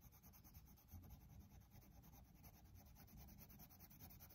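Faint scratching of a coloured pencil shading on paper.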